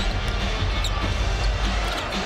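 Arena game sound: a steady crowd hum with music playing, and a basketball being dribbled on the hardwood court.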